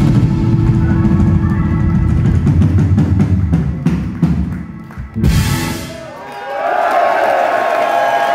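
Live rock band playing the closing bars of a song, heavy drums with electric guitar, ending on one final crashing hit about five seconds in. The crowd then cheers and whoops.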